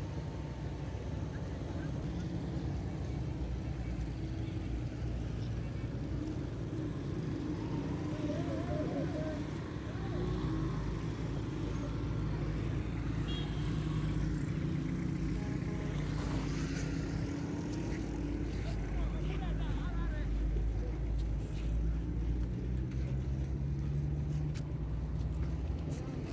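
Road traffic: a steady low rumble of passing cars, motorcycles and auto-rickshaws, growing a little louder about halfway through with a steady engine hum.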